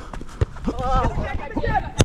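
Players shouting during a volleyball rally on grass, with thuds of footsteps and a sharp slap near the end, a volleyball being struck.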